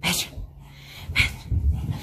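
Small dogs moving about, with two short sharp sounds about a second apart and low thumps near the end.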